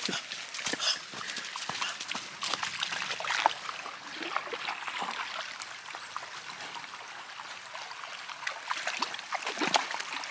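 Shallow rocky creek trickling. Footsteps rustle through dry leaves, and small dogs' paws splash and patter as they wade into the water.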